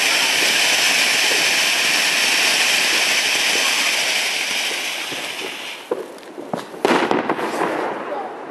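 Keller Silberpalmen firework fountain spraying sparks with a steady, loud hiss that fades and dies away about six seconds in as it burns out. A few sharp cracks follow, the loudest about seven seconds in.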